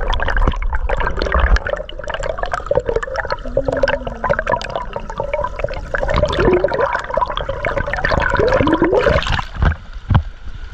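Fast stream water heard through a camera held underwater: a loud, muffled churning and gurgling full of crackling bubble clicks, with a short wavering tone a few seconds in and a quick rising glide near the end. Just before the end the sound changes as the camera comes up into the open air over the rapids.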